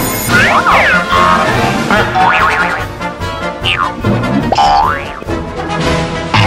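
Comic cartoon sound effects over music: springy boings and sliding-pitch glides that swoop up and down several times. A bell-like ringing cuts off just after the start.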